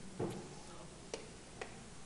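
Chalk on a chalkboard while graph axes are drawn: about three faint, sharp clicks of the chalk tip striking and dragging on the board.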